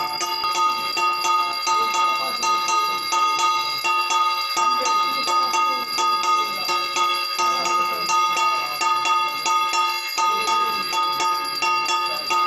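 A handheld puja bell rung rapidly and steadily, its clear ringing tones sounding with every quick stroke. Faint singing of a devotional song comes through underneath.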